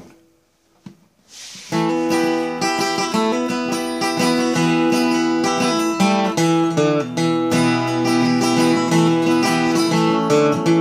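Acoustic guitar with a capo, strummed in D minor: after a brief near-silence with one small click, full chords start ringing about two seconds in and carry on steadily, changing every second or so.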